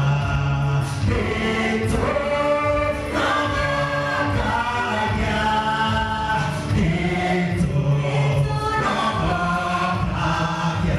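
A gospel hymn sung by a group of voices, led by a man singing into a microphone, with long held notes.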